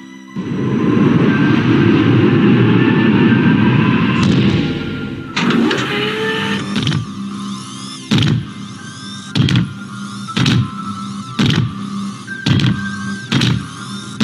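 Documentary score and sound design: a loud low rumble for the first five seconds, then music with a sharp hit about once a second over held tones.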